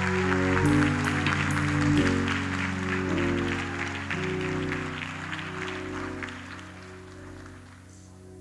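Audience applauding over held instrumental chords that change every second or so; the clapping thins and the whole fades out toward the end.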